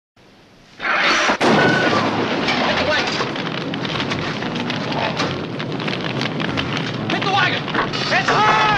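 A sudden loud burst about a second in, then a big barn fire burning with dense crackling.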